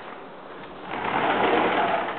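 A closet door being slid open: a rough rolling noise that starts about a second in and lasts about a second.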